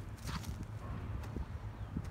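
Footsteps of a person walking on grass, a few soft irregular steps, over a low steady rumble of wind on the phone's microphone.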